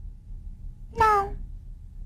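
A young girl's brief whimper, about a second in, falling in pitch.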